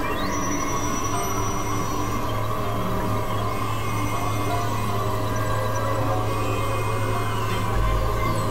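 Experimental electronic drone music from synthesizers. A steady low hum sits under layered sustained tones, a high tone glides up and holds right at the start, and a deeper low tone swells in near the end.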